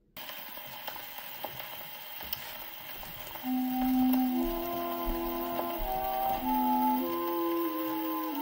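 A 1922 Vocalion 78 rpm record playing on an acoustic Orthophonic Victrola: the disc's surface hiss and crackle start suddenly just after the beginning. About three and a half seconds in, the orchestral introduction begins, a melody of held notes over lower sustained tones.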